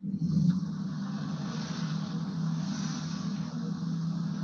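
A video clip's soundtrack playing through room speakers: a steady low hum with a hiss above it, starting suddenly.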